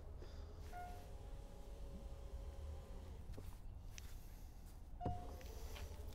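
Mercedes EQS power rear hatch opening on its electric drive: a faint steady hum, with a short beep soon after the start and another beep with a click about five seconds in.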